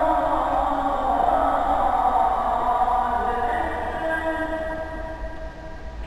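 Male muezzin chanting the ezan, the Islamic call to prayer, in long held, ornamented lines that fade away over the second half.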